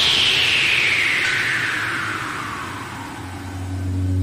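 Music transition effect: a long falling whoosh that glides steadily down in pitch over about three seconds as the music fades. A low sustained bass tone comes back in near the end.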